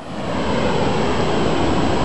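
Steady rushing noise of water spilling over a low dam's weir.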